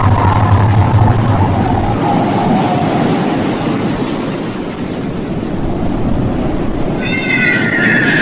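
Loud rushing noise of churning water. Over it, a drawn-out wailing cry slowly falls in pitch over the first few seconds, and a higher wailing cry starts near the end.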